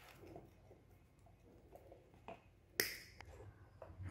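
Quiet handling of wires and hand tools on a wooden tabletop: faint scattered ticks, with one sharp click about three quarters of the way through.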